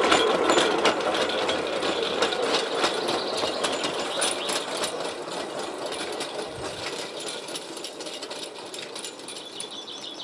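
Small steel-wheeled rail trolley rolling along narrow-gauge track, its wheels rattling and clicking on the steel rails, fading steadily as it rolls away.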